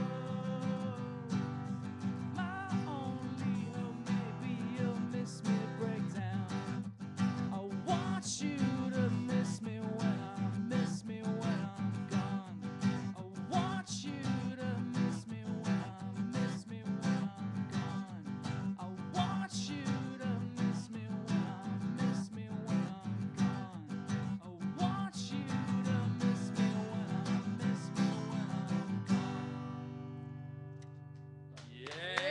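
Acoustic guitar strummed in a steady rhythm, played live as a song's closing passage. Near the end the strumming stops and the last chord rings out and fades.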